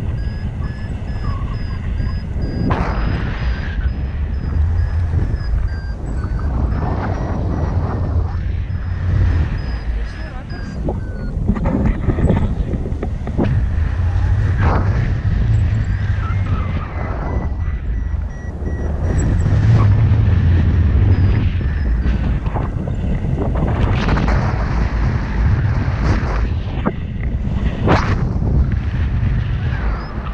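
Wind buffeting the microphone in flight on a tandem paraglider: a heavy, gusty low rumble. Over it a paragliding variometer beeps in a fast run of short, high-pitched pulses, its pitch shifting a few times as the climb rate changes.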